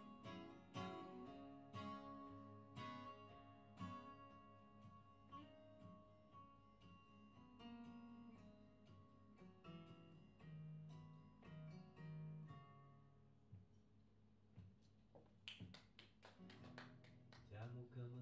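Acoustic guitars playing an instrumental passage live. Plucked chords ring out about once a second at first, thin to sparser single notes, then a quick run of strokes comes near the end.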